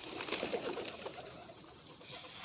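A feeding flock of feral pigeons: low cooing with soft fluttering and clicks of wings, busiest in the first second.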